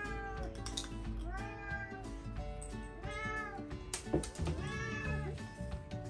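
Domestic cats meowing about four times, each meow rising and then falling in pitch, begging for food at the table, over steady background music.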